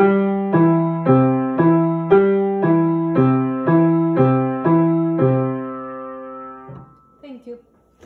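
Upright piano, both hands playing the same notes an octave apart in a steady beat of about two notes a second. The notes step C, E, G, E and back down to C. It ends on a held C whole note that stops about 6.7 s in when the keys are released.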